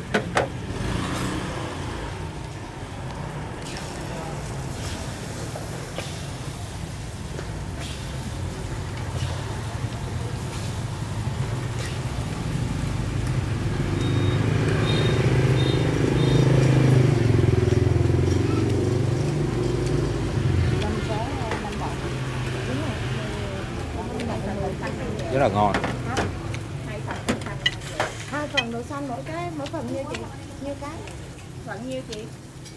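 Low motorbike engine rumble that swells to its loudest about halfway through and then fades, over the steady chatter of voices around the table.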